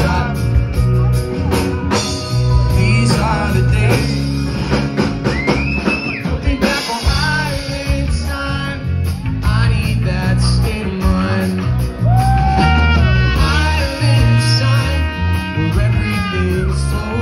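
Live reggae band playing loudly through a club PA: electric guitar, bass guitar and drum kit, with singing, heard from among the audience.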